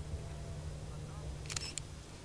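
Camera shutter firing a short burst of a few quick clicks about one and a half seconds in, over a steady low rumble.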